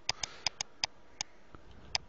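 Sharp clicks of a computer mouse and keyboard, about seven in two seconds at uneven intervals.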